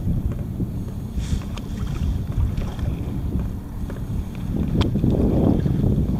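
Wind buffeting the microphone in gusts over small waves lapping at a kayak's hull, with a couple of light knocks.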